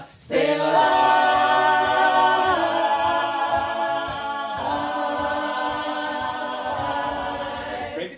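A group of men's and women's voices singing a cappella, holding long sustained chords that shift to a new chord about two and a half and again about four and a half seconds in.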